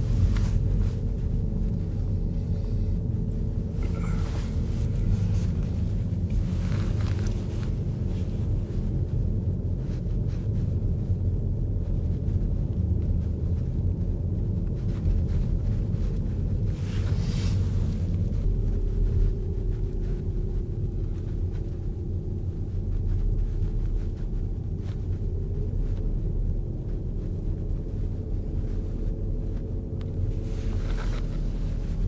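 Steady low rumble of a car's engine and tyres heard from inside the cabin, driving slowly on an unpaved road, with a few brief noisier moments along the way.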